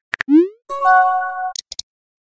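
Synthesized texting-app sound effects: a couple of quick keyboard-tap clicks, then a short rising pop as a message is sent. After it comes a brief chime of several held tones ending in a few quick high blips.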